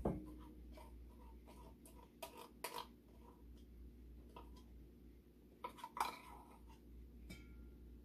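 A metal spoon scraping and tapping inside a tin can as thick sweetened condensed milk is scraped out into a stainless steel bowl: a few faint, scattered clicks and scrapes, the clearest at the start and about two and six seconds in.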